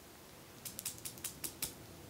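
A quick run of about eight light clicks and taps over about a second, from plastic makeup items being picked through and handled.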